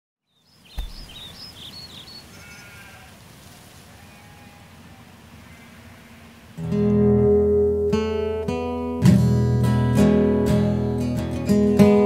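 A soft thump and faint short animal calls over a quiet background, then an acoustic guitar comes in loudly about halfway through, strumming and picking chords with sharp repeated attacks.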